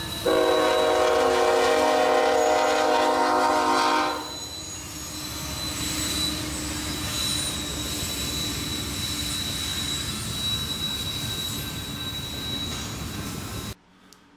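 A diesel freight train with orange locomotives and double-stacked container cars passes close by. It sounds its multi-tone air horn in one loud blast of about four seconds. The horn is followed by a steady rumble of the cars rolling by, with a thin high-pitched squeal above it.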